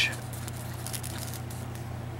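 A steady low hum of room background, with a few faint light rustles of handling.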